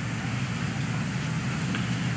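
Steady background noise of the meeting room: a low hum and even hiss with no distinct events.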